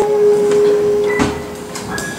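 A single guitar note from a worship song's intro, held over from the previous phrase and slowly fading, with a short knock a little past a second in.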